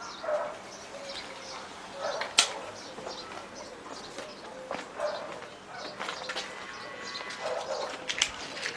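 Birds calling, with short lower-pitched calls every couple of seconds, faint high chirps, and one sharp click about two and a half seconds in.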